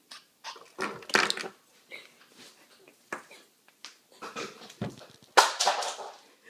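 Stifled, breathy laughter coming in irregular snorting bursts, with a louder burst near the end.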